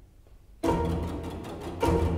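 Film score music: after a brief hush, strings come in suddenly about half a second in with a fast run of short, sharp strokes, and a second loud accent comes near the end.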